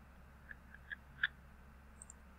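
Four faint, quick computer mouse clicks, the last one the loudest, over a steady low electrical hum.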